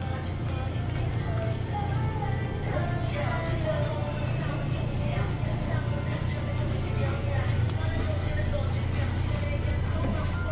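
Shop background music with a singing voice, over a steady low hum.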